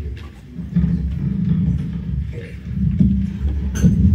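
Handling noise from a handheld microphone over the hall's PA: low rumbling with a few soft knocks.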